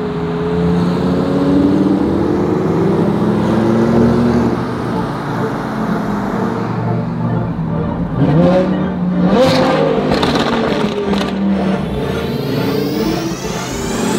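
Straight-piped Lamborghini Aventador V12 running at low speed in traffic, heard from inside the cabin, with the revs climbing and dropping twice around the middle. Near the end a rising electronic sweep from music comes in over it.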